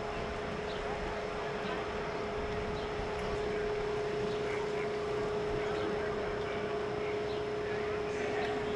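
A steady, even hum holding one pitch, over a constant background noise, with faint indistinct voices.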